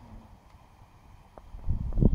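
Wind buffeting the microphone: a faint low rumble that swells into a loud, gusty rumble near the end.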